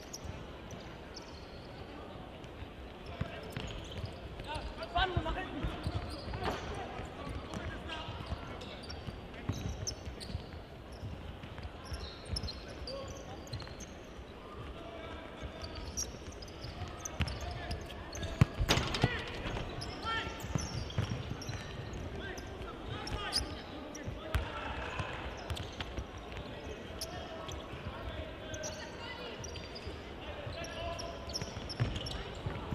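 Indoor futsal match in a sports hall: the ball being kicked and bouncing on the hard hall floor in scattered knocks, with players' and spectators' shouts echoing in the hall. The loudest kick comes about two-thirds of the way through.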